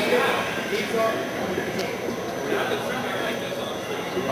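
Indistinct speech and background chatter in a large, echoing hall.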